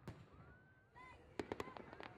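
Faint fireworks: a thin whistle rising in pitch in the first second, then a quick cluster of sharp crackling pops about a second and a half in.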